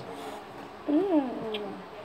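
A cat meowing once, a single call about a second in whose pitch rises and then falls.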